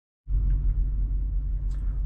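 Lexus GX470's 4.7-litre V8 (2UZ-FE) idling, a steady low rumble heard inside the cabin, cutting in about a quarter second in.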